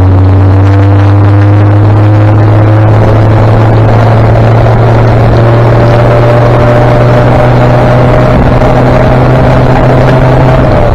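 A 1959 Daimler Ferret armoured scout car's Rolls-Royce B60 straight-six petrol engine running loud and steady on the move, its note slowly rising as it pulls along.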